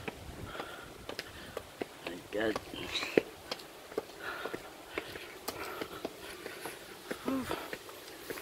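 Footsteps on concrete steps as people climb a stairway, a scatter of short sharp scuffs and taps, with faint snatches of talking in the background.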